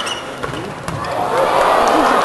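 Overlapping voices of people talking and calling out, with two sharp smacks of a volleyball being struck, about half a second and about a second in.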